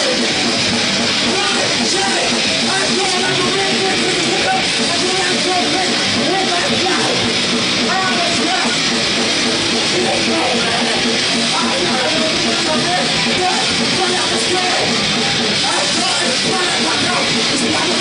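Heavy metal band playing live: electric guitars and drums, loud and continuous.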